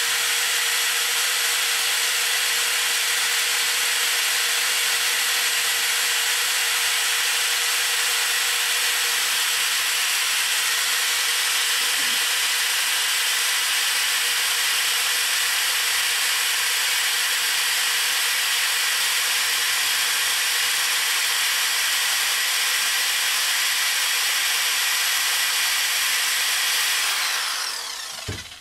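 1400 RPM electric drill running steadily, its rubber winding wheel driving the spinning disc of a bowstring serving tool as it winds serving thread onto the string. The steady whir runs down and stops near the end.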